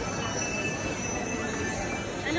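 Steady murmur of a busy indoor shop: indistinct shoppers' voices and footsteps blending into an even hubbub, with a few faint high held tones over it.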